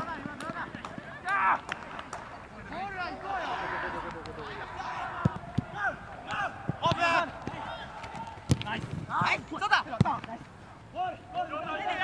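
Football players calling and shouting to each other on the pitch during play. A few sharp thuds of the ball being kicked come through, spread through the second half.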